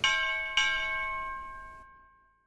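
A bell-like chime struck twice, about half a second apart, each strike ringing on in several clear tones that fade away over about two seconds.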